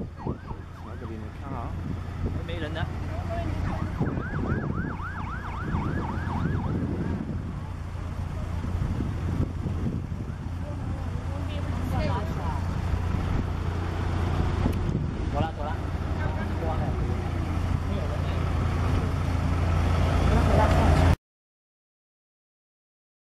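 Police escort siren yelping in quick repeated up-and-down sweeps, most clearly about four to seven seconds in, over a steady low rumble of passing motorcade vehicles. The rumble grows louder, then the sound cuts off suddenly near the end.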